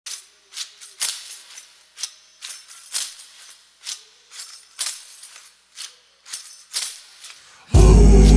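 Sparse tambourine-like percussion hits with a jingly rattle, roughly one or two a second at an uneven pace. Just before the end a loud music track with heavy deep bass comes in suddenly.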